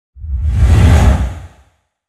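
A single whoosh sound effect from a news logo transition, with a deep rumble under it. It swells to a peak about a second in and fades out by about a second and a half.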